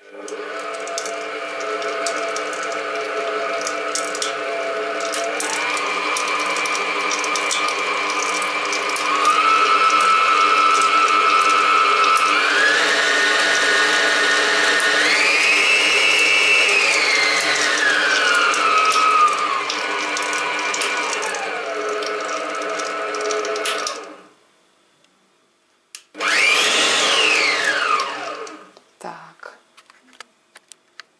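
Starwind SPM7169 planetary stand mixer running empty with its wire whisk, with a soft, quiet motor whine. The pitch steps up through the speeds, holds at the top, and steps back down before the motor stops about 24 seconds in. A couple of seconds later comes a short burst on pulse mode: the motor spins up quickly and winds down as the button is released.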